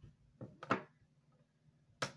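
Hard plastic graded-card slabs knocking against each other as they are set down on a wooden table: two quick clacks a little under a second in, the second louder.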